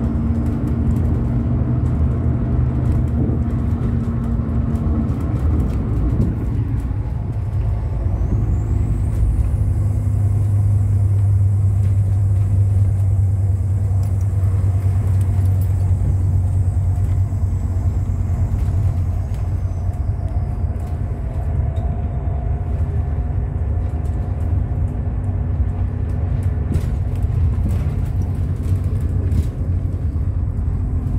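Bus engine running with road noise, heard from inside the moving bus: a steady low drone whose note changes about six seconds in.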